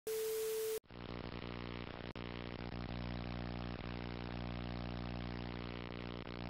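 Television static hiss with a steady test-pattern tone, cut off sharply after just under a second. It gives way to a steady, dull low hum with many overtones and a faint crackly hiss, in the manner of an old TV or film soundtrack, with a brief dropout about two seconds in.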